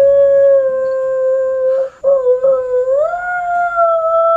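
A child's voice holding long, steady notes in a howl-like call. One note breaks off about two seconds in, and the next starts lower and slides up to a higher pitch, which it holds.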